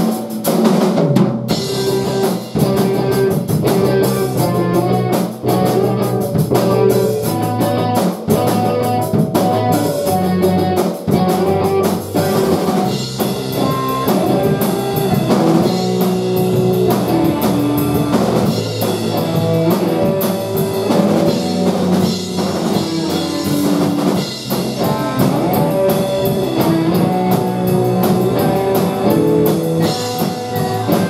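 Live rock band playing amplified through a venue PA, with a drum kit keeping a steady beat under electric guitars. The mix gets fuller and brighter about halfway through.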